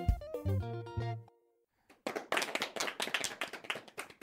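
The instrumental accompaniment of a children's song ends with a few sustained keyboard-like notes over a beat, then stops short about a second in. After a brief silence, several people clap their hands.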